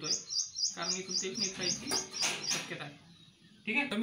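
A small bird chirping rapidly, about four short high chirps a second, stopping about two and a half seconds in, with a voice talking underneath.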